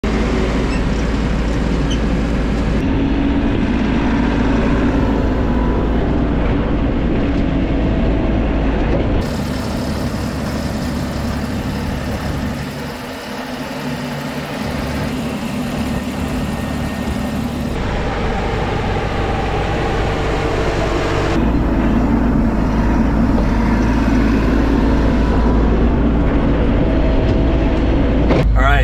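Diesel engine of a Mahindra compact tractor with a front loader, running steadily while it works dirt. The drone changes abruptly several times as the clips cut.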